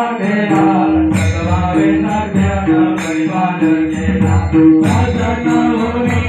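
Hindu devotional aarti music: a chanted, sung melody over a steady rhythm and a held drone, with a bright metallic stroke about every two seconds.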